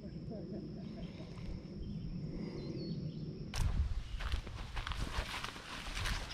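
Footsteps pushing through brush and dry leaves, with crackling and rustling that start about three and a half seconds in.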